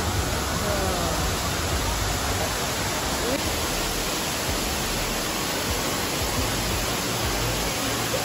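Steady rush of water falling down an indoor waterfall on a planted green wall, with faint voices under it.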